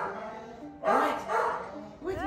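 A young pit bull–type dog giving short play barks while playing on a couch, one at the start and another about a second in, over soft background music.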